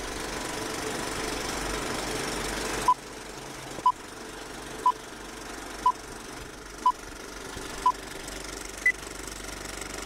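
Old-film countdown leader sound effect: a steady film-projector rattle and hiss, with a short beep once a second from about three seconds in, six beeps at one pitch followed by a single higher beep.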